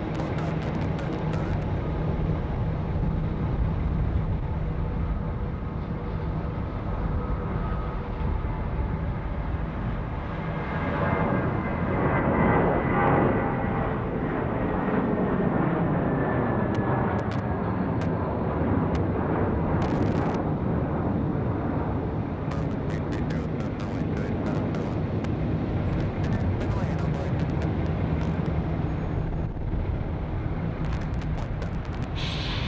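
Jet airliner engine noise as an aircraft passes: a steady noise that swells about twelve seconds in, with a whine slowly falling in pitch.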